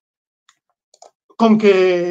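A few faint computer-mouse clicks, then, about one and a half seconds in, a person's drawn-out hesitation sound, a held "ehh" with no words.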